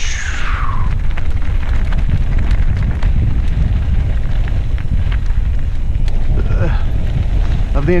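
Wind rumbling over the camera microphone of a mountain bike rolling down a rocky dirt singletrack, with a steady run of small clicks and rattles from the tyres on loose gravel and from the bike. A brief falling whistle comes right at the start.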